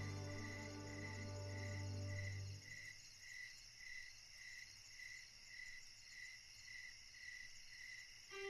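A cricket chirping steadily, about two even chirps a second, faint under soft music that fades out about a third of the way in.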